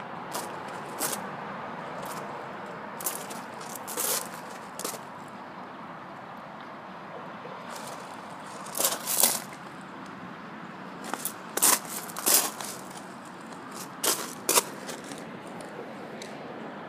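Irregular crunching of shoes shifting on loose gravel, with louder clusters of crunches about halfway through and near the end, over a steady outdoor hiss.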